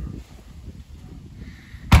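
Low rumbling handling and wind noise on a handheld microphone, then a single sharp thump near the end, the loudest sound: the car's rear door being shut.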